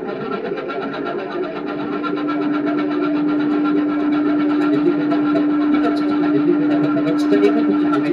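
Electronic music from a modular synthesizer rig: a dense, finely chopped, buzzing texture, joined about a second and a half in by a steady held tone that swells and then sustains, with scattered clicks near the end.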